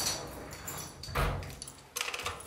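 Flat's front door being locked with a key: a clunk, a heavier thump about a second in, and a sharp click near the end.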